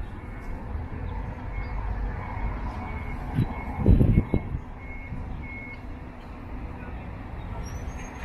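Steady street traffic noise with a vehicle's reversing alarm beeping faintly at an even pace. A brief loud low rumble comes about four seconds in.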